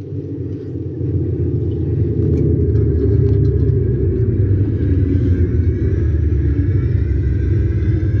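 Marching band beginning its show: a loud low rumble from the low end of the band swells in. Sustained higher chord tones come in after about two seconds.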